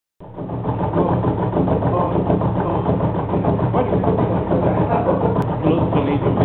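Electric motor-driven machine spinning up within the first second and then running with a steady hum, turning a shaft with a carved block in pillow-block bearings.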